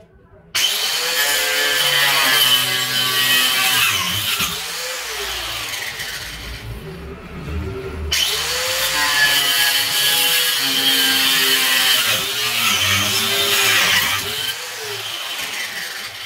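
Handheld angle grinder switched on about half a second in and running at full speed with a high whine. Its whine drops away briefly near the middle, returns loud, and falls off near the end as the grinder winds down.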